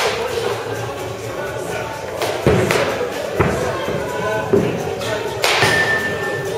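Baseball bat hitting pitched balls: a sharp crack right at the start and a louder one at about five and a half seconds that rings briefly, with several duller thuds in between. Background music and voices run underneath.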